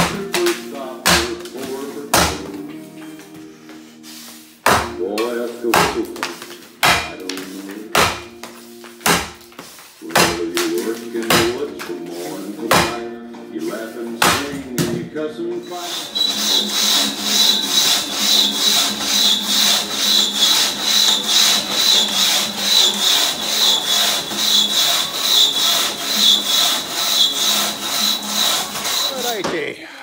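Axe striking a beech log in a standing-block chop, sharp blows roughly once a second, over background music. About 16 seconds in the chopping gives way to music alone with a fast, even beat.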